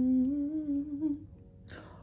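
A woman humming with her mouth closed: one held note, rising slightly in pitch, that stops a little over a second in. A brief rush of noise comes near the end.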